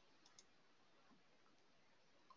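Near silence, with two faint clicks in quick succession near the start, typical of a computer mouse or keyboard being worked.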